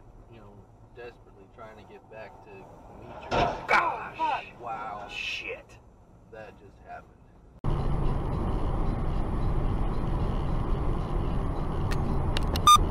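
A car crashing: a sudden loud impact about three seconds in, followed by voices exclaiming. Then about eight seconds in the sound switches abruptly to a steady roar of road and engine noise inside a moving car.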